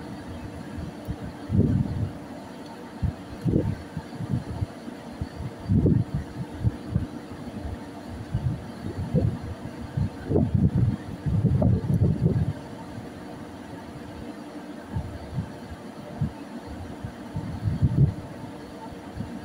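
Irregular low rumbling gusts of wind buffeting the microphone on an open ship's deck, heaviest from about ten to twelve seconds in, over a faint steady hum from the ship's machinery.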